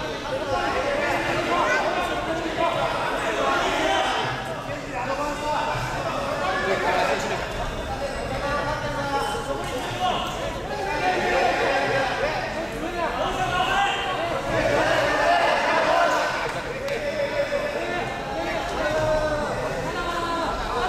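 Many overlapping voices in a large hall: a continuous babble of chatter and calls with no single clear speaker.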